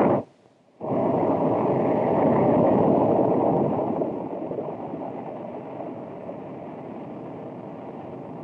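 J-2 rocket engine static test firing: a short blast, a brief break, then from about a second in a steady roar that slowly fades over the second half.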